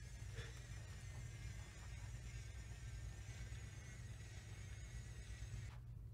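SwitchBot Curtain motors running on the curtain rod, a faint wavering high whine as they draw the curtains open after the motion sensor triggers them. The whine stops just before the end.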